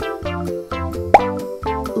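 Bouncy children's background music with a plucked-string melody, with one short rising pop effect about a second in that is the loudest sound.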